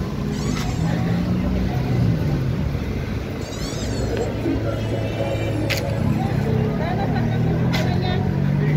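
City street traffic: car engines running with a steady low drone as vehicles pass, mixed with the voices of passers-by and a couple of sharp clicks in the second half.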